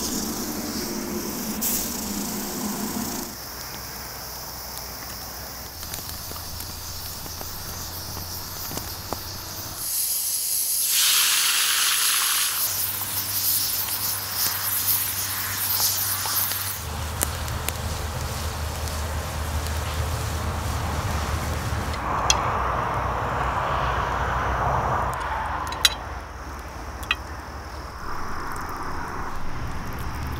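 Outdoor campfire cooking sounds: a loud hiss for a couple of seconds, then potatoes frying in oil in a cast-iron pan over a wood fire, a steady bubbling sizzle, followed by a lower fire noise with a few sharp clicks.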